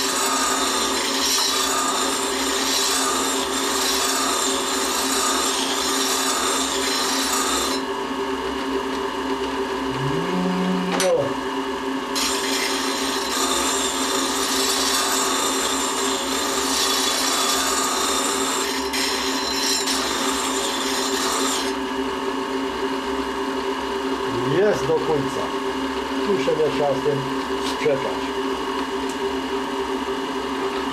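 Electric diamond-wheel grinder running steadily while a steel lathe threading tool bit is ground against the wheel, a hissing grind in two long passes: one over the first eight seconds and another from about twelve to twenty-two seconds in. Between and after the passes only the motor's steady hum is heard.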